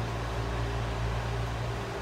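Steady low hum over a faint even hiss, with no other event.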